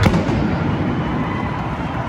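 A single sharp pyrotechnic bang right at the start, echoing and fading slowly through a large domed stadium.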